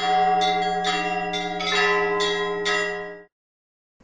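Church bells ringing: a low bell hums steadily beneath a run of higher bell strikes, about two a second, and the peal cuts off abruptly about three seconds in.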